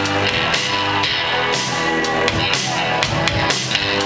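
A live band playing instrumental rock on drum kit, electric guitar and keyboards, with cymbals struck repeatedly over sustained notes.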